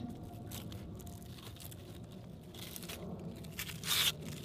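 Leatherjacket's tough, sandpapery skin being torn off the fish by hand, an irregular tearing crackle, louder twice in the second half.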